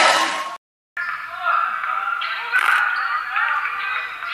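Indistinct voices from a gym game, cut off a little over half a second in by a brief dead silence at an edit. Then quieter, muffled voices follow, picked up from a screen playing a game livestream.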